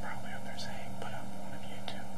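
A person speaking in a low whisper over a steady electrical hum and hiss.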